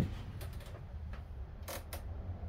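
A few faint, scattered clicks and light rattles over a low steady rumble.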